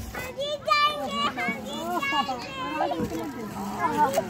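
Young children's high voices talking at play, sometimes two at once, almost without a pause.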